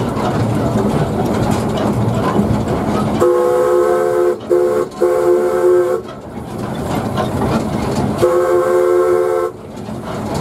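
Narrow-gauge steam locomotive running along at low speed from its footplate, then its steam whistle sounding a chord of several notes: a long blast with two brief breaks starting a few seconds in, and a second blast near the end.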